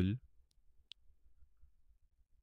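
A spoken word trails off at the very start. Then come two faint, sharp computer keyboard key clicks, about half a second and about a second in, over near silence.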